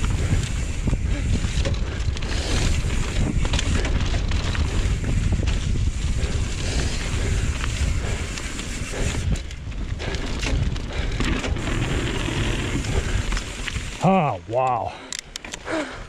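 Mountain bike ridden fast down a packed-dirt trail: wind rushing over the camera microphone and tyres rumbling on the dirt, with frequent knocks from bumps. About fourteen seconds in the rushing noise drops away as the bike slows, and the rider gives a few short wordless exclamations.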